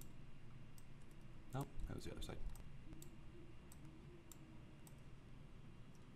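Faint, scattered clicks from a computer mouse and keyboard, with a brief murmur of voice about a second and a half in.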